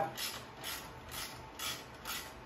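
Ratchet wrench loosening the engine shroud bolts: short runs of ratchet clicks repeating about twice a second as the handle is swung back and forth.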